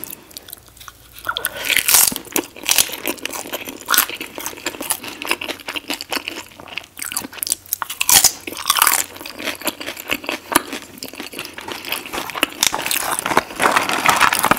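Crunching and chewing of tortilla chips loaded with nacho toppings. It starts after about a second of quiet, and the crisp bites keep going, with louder crunches every few seconds.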